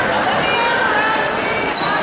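Many overlapping voices of spectators talking at once, echoing in a gymnasium, with a brief high squeak near the end.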